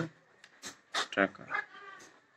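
Speech only: a man's voice in a few short, broken fragments.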